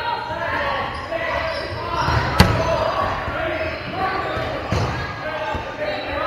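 Dodgeballs bouncing and smacking in an echoing gymnasium, with one sharp, loud smack about two and a half seconds in and a softer one near five seconds, under players' voices.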